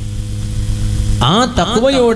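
Steady electrical mains hum from the microphone and sound system during a pause in the talk; a man's amplified voice starts again just over a second in.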